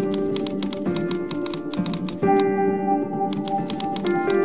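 Typewriter keys striking in quick runs, one lasting about two and a half seconds, then a short pause and a second run starting near the end, over sustained piano-like music.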